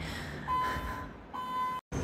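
Two steady, single-pitched electronic beeps, each about half a second long with a short gap between them, cut off suddenly near the end.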